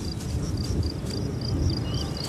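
Insect chirping in an even rhythm, about four short high chirps a second at one pitch, over a steady low rumble; a faint rising whistle comes near the end.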